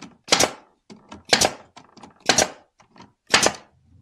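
Nail gun firing four nails into cedar picket boards, one shot about every second, each a sharp loud crack.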